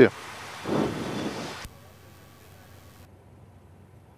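Steady hiss of an open cockpit headset intercom, with a muffled sound about a second in, cut off by a click at under two seconds. After that only a faint low background remains.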